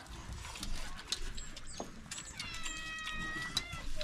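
A cat meowing once, a drawn-out high call of about a second and a half starting a little past two seconds in, over scattered light clicks and taps of people eating by hand off banana leaves.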